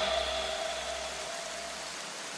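A soft, even hiss with a faint held tone, slowly fading away.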